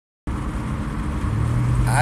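Road and engine noise inside a moving car's cabin: a steady low rumble that starts abruptly just after the beginning. A steady low hum joins it about halfway through.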